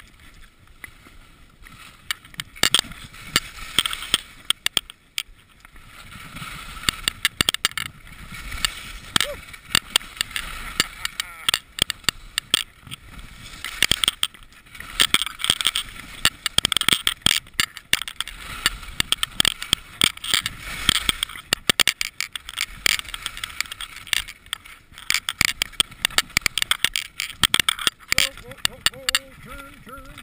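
Skis hissing and scraping over snow during a downhill run through trees, with many sharp clicks and knocks throughout. The sound is quieter for the first two seconds.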